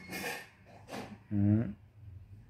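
A person's voice between sentences: a short breathy exhale, then a brief hesitant "uh".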